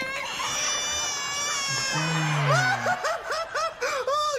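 A long high-pitched wail, held and slightly wavering, like a crying baby, with a deep voice briefly under it, then a quick run of high-pitched laughter near the end.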